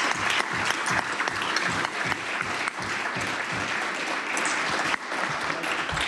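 Applause from a chamber full of legislators: many hands clapping steadily, beginning to thin out near the end.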